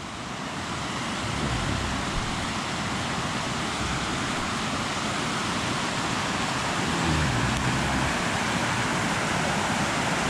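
Mountain stream rushing over rocks and small cascades, a steady rush of water that grows louder over the first few seconds as it is approached.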